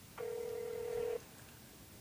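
A telephone line tone heard through the phone's speaker: one steady beep about a second long while the call is being transferred to another extension.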